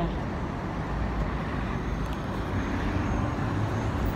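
Street traffic at the curb: a large vehicle running close by, heard as a steady road rumble with a faint engine hum near the end.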